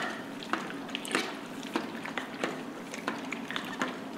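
Water sloshing inside a plastic film developing tank as it is rotated and inverted by hand for agitation, with light knocks and clicks of the tank in the hands, about one or two a second.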